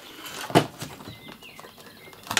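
A power cable and its connector being handled at the back of a radio: one sharp click about half a second in, then faint rustling of the lead.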